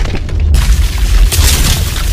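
Logo-intro sound effect: a deep, loud booming rumble with crackling, crumbling-rock debris, and a sharper burst about half a second in.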